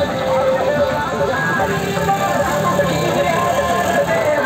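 Motorcycle and auto-rickshaw engines running as a procession passes, mixed with loud music and a voice.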